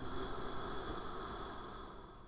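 A faint breathing sound, a soft hiss that fades away steadily over two seconds, with a few thin high music tones dying out beneath it.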